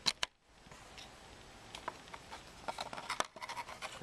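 Plastic clicks, rattles and light scraping from handling the opened light timer and plugging it in, with two sharp clicks at the start and a cluster of small clicks late on.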